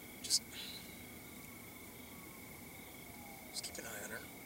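Steady high-pitched trill of night crickets. A person whispers softly over it, once about a third of a second in and again near the end.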